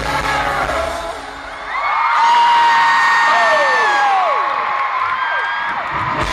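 Live band music dropping away about a second in, then a stadium crowd screaming in long, high-pitched shrieks, some sliding down in pitch; the band starts again at the end.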